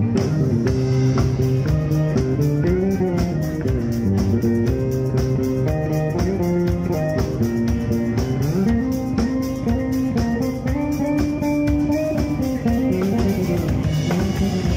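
Live band playing an instrumental passage: an electric bass line stepping between notes over a drum kit keeping a steady, quick beat, with guitar. The bass line slides upward a little past halfway.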